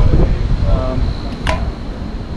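Wind noise on the microphone, a short stretch of voice a little under a second in, and a single sharp click about one and a half seconds in.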